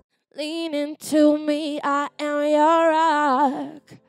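A woman singing alone, with no backing track, through a Perform-V vocal processor with its effect switched off, so the voice is dry. Several held notes with vibrato, separated by short breaks.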